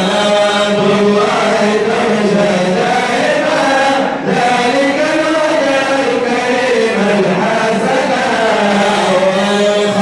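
Men chanting a madih nabawi, a sung praise poem for the Prophet: a lead voice on a microphone, with the group singing the melody along with him. The singing is continuous apart from a brief drop just after four seconds in.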